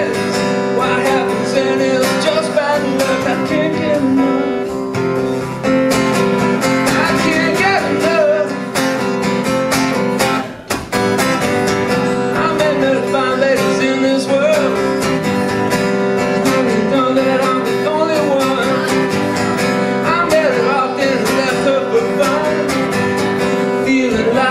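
Acoustic guitar strummed with a male voice singing, a live solo acoustic rock song. The playing drops out briefly about ten seconds in.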